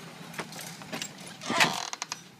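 Front door being opened: a few light clicks of the latch and handle, then a short, loud scraping rush about a second and a half in as the door swings open.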